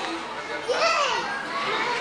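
Children playing and chattering in a large indoor play hall, with one child's high voice calling out about a second in.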